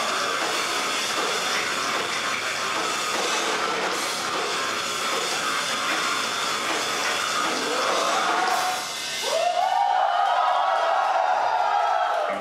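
Live heavy rock band playing loud distorted guitar, bass and drums. About three-quarters of the way through, the dense playing gives way to long held notes, with one pitch sliding up and then holding.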